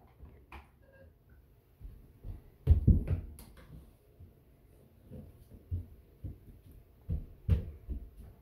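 Scattered soft thumps and knocks from a child moving about on a hardwood floor and handling toys, a toy cash register and a doll stroller. The loudest cluster of thumps comes about three seconds in, with another near the end.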